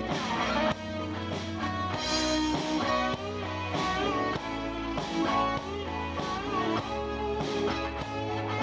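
Live rock band playing, with electric guitars to the fore over keyboard, bass guitar and drums keeping a steady beat.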